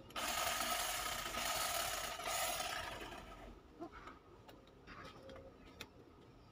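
Handheld electric hedge trimmer running as it cuts into shrub foliage. It starts suddenly just after the start, buzzes steadily, then dies away about three and a half seconds in.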